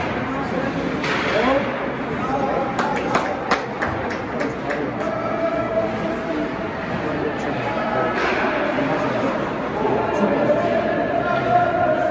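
Indistinct voices echoing through a large indoor ice rink, with a cluster of a few sharp knocks about three seconds in.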